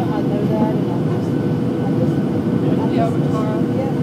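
Jet airliner cabin noise on final approach: a steady roar of the engines and rushing air, with a steady droning tone running through it.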